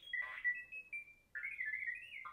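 Droid Depot R-series astromech toy droid playing its regular R2-unit beeps and whistles through its built-in speaker, with no personality chip in. A run of short electronic beeps, a brief pause about a second in, then a warbling trill.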